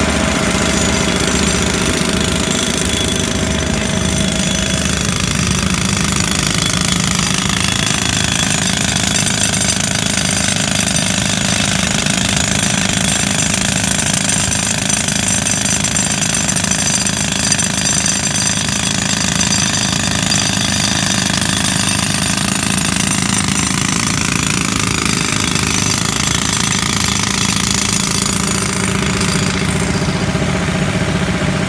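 Pneumatic rock drill (jackhammer) hammering steadily into sandstone, powered by compressed air.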